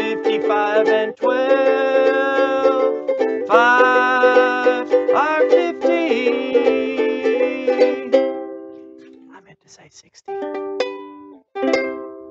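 Ukulele strummed in chords under a man singing the five times table. About eight seconds in the singing stops and a last chord rings out and fades, followed by two short bursts of sound near the end.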